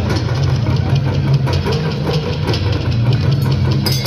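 Music of dense, rapid drumming over a steady low hum, with an abrupt change just before the end.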